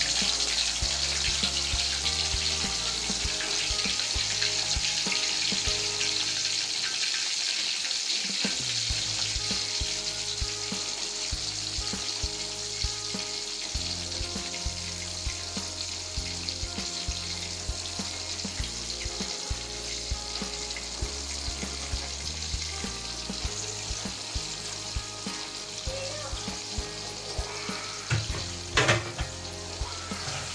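Pieces of salted fish frying in hot oil in a wok: a steady sizzle that slowly dies down. A couple of sharp knocks come near the end.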